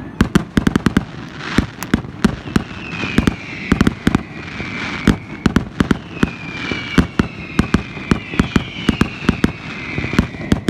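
Fireworks display: a dense, uneven run of bangs and crackles from aerial shells bursting in quick succession. Two long, slowly falling high whistles run through it, one a few seconds in and another from about the middle to the end.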